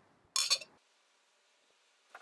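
Lager being poured from a glass bottle into a tilted glass: a short splashy burst as the pour starts, then a faint steady hiss of the carbonated beer running down the side of the glass.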